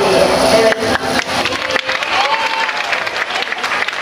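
Audience applauding, with crowd voices mixed in. The clapping thickens about a second in.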